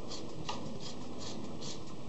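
Plastic screw cap of a data logger's cylindrical enclosure being twisted on by hand, its threads giving a series of short, dry rasps, two or three a second.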